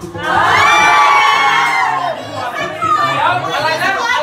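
A group of party guests cheering and shrieking together in one loud high shout that swells up just after the start and fades after about two seconds, followed by mixed voices and chatter.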